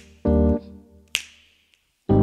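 Finger snaps keeping time with a keyboard piano: a snap right at the start, a short piano chord just after, and a second snap about a second in, followed by a brief pause.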